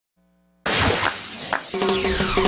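Opening sound effects of a TV show's animated logo intro. About half a second in, a sudden loud noisy hit with sweeping sounds starts, and the pitched theme music with a regular beat comes in near the end.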